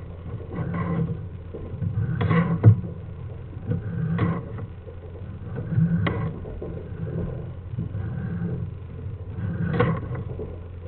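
Sewer inspection camera pushed along a drain pipe: irregular scraping and rubbing with a couple of sharp knocks, about three seconds in and again about six seconds in, over a steady low hum.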